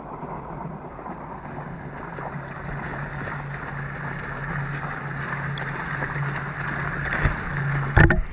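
Steady rushing outdoor noise with a low, even hum under it, growing slightly louder toward the end.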